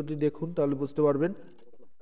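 A man's voice speaking for about the first second and a half, then little more than faint room tone.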